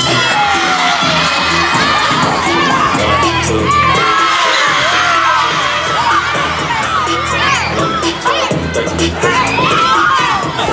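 A group of children shouting and cheering excitedly, many voices at once with whoops, over music playing underneath.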